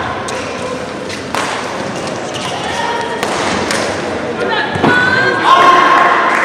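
Echoing sports-hall sound between badminton rallies: scattered thumps and taps, with voices and a raised call near the end.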